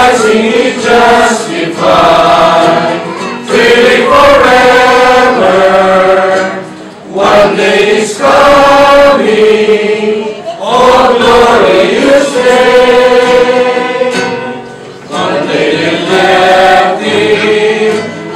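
A group singing a slow hymn together, led by a man's voice, in sustained phrases of a few seconds with short breaks between them.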